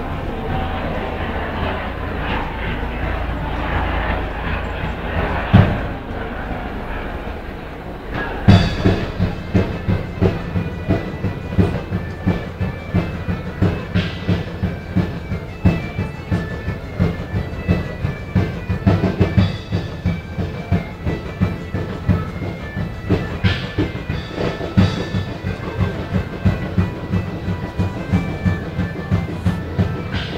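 Medieval-style music played live: from about eight seconds in, a steady drum beat of roughly two strokes a second drives a high, stepping melody. The first seconds are a noisy jumble without a clear beat, with one thump.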